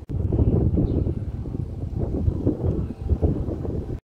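Wind buffeting the microphone: a dense, uneven low rumble that swells and dips.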